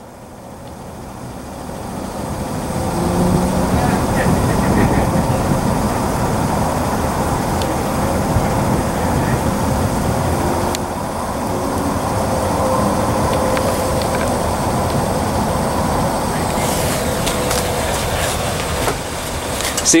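Steady low rumble of an idling vehicle engine, fading in over the first few seconds and then holding level.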